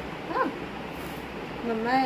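Indian ringneck parakeet giving a short, high-pitched call alongside a woman's speech.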